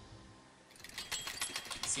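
The tail of background music dies away, then about a second in a rapid run of sharp clicks starts, about eight a second: a ticking sound effect as on-screen titles flick past.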